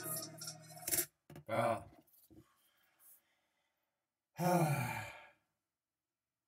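Rap music cuts off abruptly about a second in. A man's voice then makes a short sound, and at about four and a half seconds a longer voiced sigh that falls in pitch.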